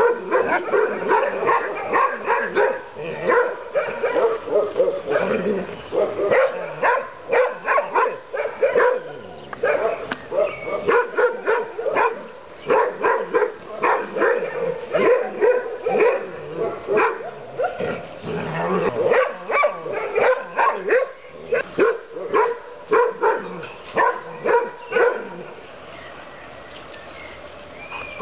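Five-month-old Central Asian Shepherd (Alabai) puppy barking over and over, about two or three barks a second. The barking stops a couple of seconds before the end.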